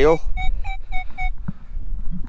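Nokta Makro Legend metal detector giving a quick run of short, mid-pitched beeps, about five in a second, as its coil sweeps over a buried target. The steady non-ferrous signal reads in the low 30s, which the user takes for a deep target. Wind rumbles on the microphone.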